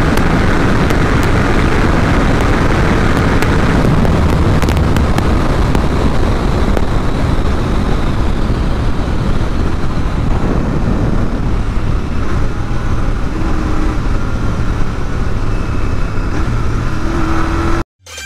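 Royal Enfield Interceptor 650's 648 cc parallel-twin engine running at high speed under heavy wind rush on the microphone, with the bike slowing from about 158 km/h to about 84 km/h. The sound is loud and continuous, eases a little in the second half, and cuts off abruptly near the end.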